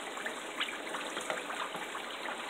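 Large stockpot of pork fat rendering into lard at a hard boil, bubbling with many small pops, steady throughout, as the water in the fat cooks off at around boiling point.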